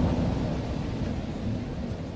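The closing low rumble of a dark Viking-style music track, fading out steadily after the instruments have stopped.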